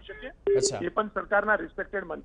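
A person talking over a telephone line, the voice thin and cut off at the top as phone audio is.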